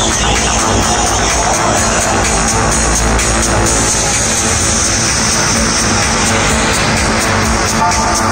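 Electronic dance music with a steady techno beat, played live at high volume over an arena sound system and heard from within the crowd.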